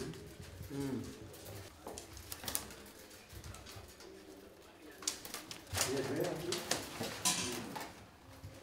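Thin cane (rattan) strands clicking and crackling as they are hand-woven into a basket frame. A bird's cooing calls come about a second in and again around six seconds.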